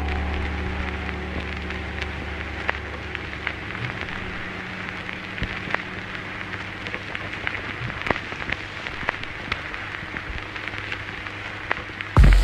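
Ambient rain-like crackle, an even hiss dotted with scattered sharp clicks, closing out a lo-fi electronic track. The track's last sustained low notes fade away in the first few seconds, leaving only the crackle.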